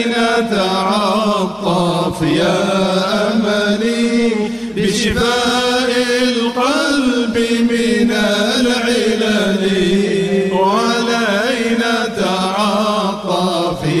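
Voices chanting Arabic devotional praise (hamd and dhikr), a steady held drone under a melodic line that rises and falls, continuous.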